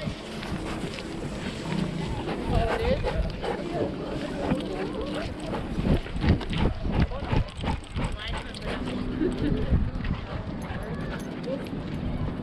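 Rubbing and knocking from a dog-mounted camera, with knocks clustered about six to eight seconds in, as the dog moves and noses other dogs. Indistinct people's voices sound in the background.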